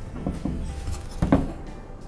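Hands handling a mogul lamp-socket bracket on a sheet-metal grow light reflector while its thumb screw is tightened: a few light clicks and knocks, a pair about a quarter second in and another pair a little past halfway.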